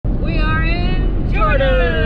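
Two long, held vocal notes, each sliding slowly down in pitch, the second starting about halfway through, over the steady low rumble of a Toyota Land Cruiser 76 series heard from inside the cabin.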